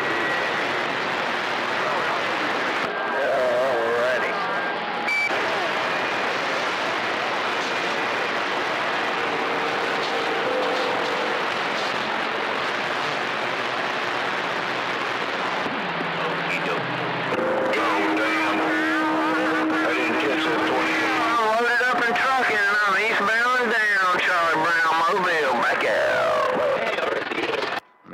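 CB radio receiver giving steady static hiss. In the second half, garbled, warbling voice-like signals and whistling tones come through the noise.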